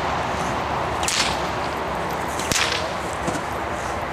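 Two whip swishes through the air, about a second and a half apart, the second ending in a sharp crack. This is the helper's whip used to drive the dog in protection training.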